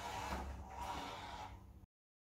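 Faint background room noise with a low hum, cutting off abruptly to silence near the end.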